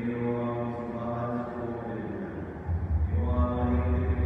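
Liturgical chant: a voice sings a prayer on held, steady notes. A low sustained bass tone comes in near the end and grows louder.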